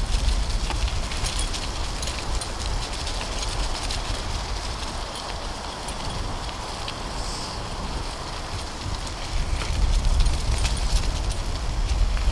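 Wind rumbling on the microphone while moving along a leaf-strewn dirt trail, with a steady scatter of crackles from dry leaves and grit underfoot or under the wheels.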